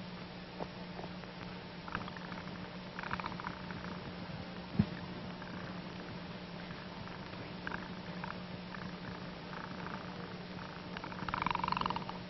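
Faint bubbling of breath blown through a soapy bubble pipe, a froth of little bubbles forming at the bowl, in irregular spurts with a stronger spurt near the end. A steady low hum runs underneath.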